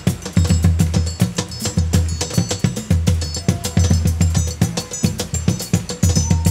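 Instrumental forró percussion groove: a zabumba bass drum beaten in a fast, steady rhythm of low thumps, with high metallic ticking and ringing over it.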